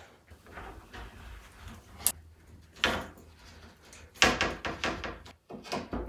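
Spline roller and screwdriver pressing rubber spline into the groove of an aluminum window-screen frame: a sharp click about two seconds in, then a cluster of knocks and clicks of tool and metal frame from about four seconds.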